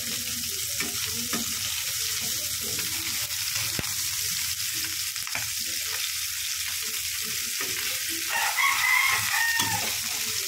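Food sizzling steadily as it fries in a pan, with a few light knocks scattered through. Near the end a rooster crows in the background for about a second and a half.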